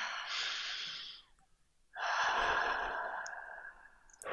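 People taking a slow breath together into a close microphone. An inhale ends about a second in, and after a short pause comes a long exhale, the loudest part, which fades away.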